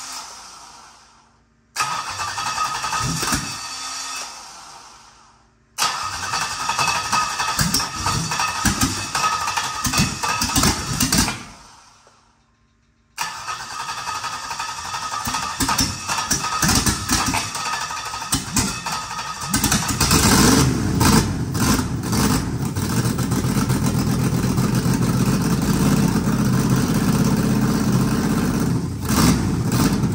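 A GM LS V8 on an engine stand is cranked by its starter through a remote starter switch in several bursts with short pauses. About two-thirds of the way through it fires and keeps running with a steady rumble.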